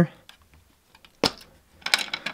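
One sharp plastic click a little over a second in, then a few light clicks near the end: the thumb screws of the clear plastic cover over a battery's DC breaker being undone and the cover freed.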